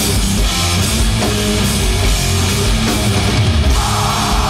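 Hardcore band playing live: distorted electric guitars, bass guitar and drum kit, loud and dense.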